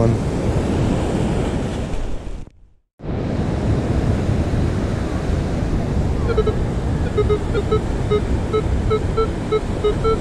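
Minelab Equinox metal detector giving short, low-pitched beeps, about three a second, starting about six seconds in as the coil sweeps over a target. The target reads all low numbers, which could be something good or just foil. Surf and wind are on the microphone throughout, broken by a brief dropout near the three-second mark.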